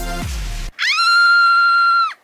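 Upbeat background music with a thumping beat cuts off under a second in. A loud, steady high-pitched tone follows, sliding up at its start and dropping away at its end: an edited-in sound effect.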